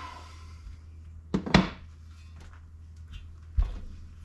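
A cast-aluminium intake manifold being handled and turned over on a workbench: a scrape at the start, a couple of sharp knocks about a second and a half in, and a dull thump near the end.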